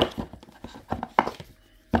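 Hands handling a plastic action camera and its cardboard box and packaging: several sharp taps and knocks, a few in each second.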